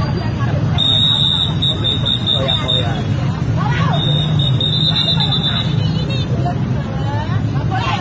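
Several voices talking over one another in a heated street argument, over steady road traffic with motorcycle engines running close by.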